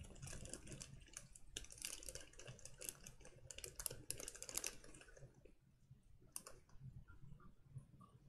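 Faint, rapid crackling and clicking of plastic packaging being handled as a potted aquarium plant is worked out of its container, thinning to scattered clicks after about five seconds.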